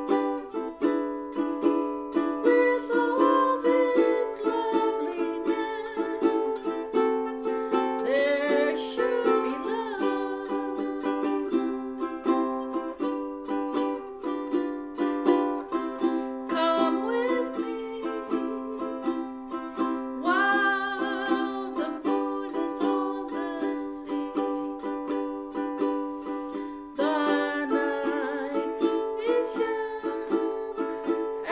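Ukulele strummed in steady chords, with a woman singing over it in phrases, in a small room.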